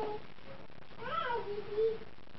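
A baby fussing. A short cry fades just after the start, then a longer cry begins about a second in, rising in pitch before falling to a held note.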